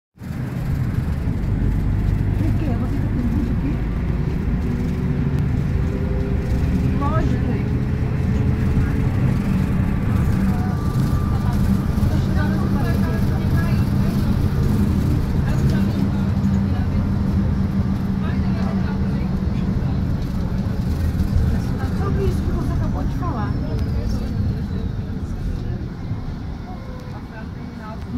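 Steady low engine rumble and road noise heard from inside a bus moving in city traffic, with passengers' voices faintly in the background.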